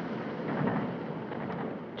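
Steady running noise of a moving train, heard from inside a passenger compartment.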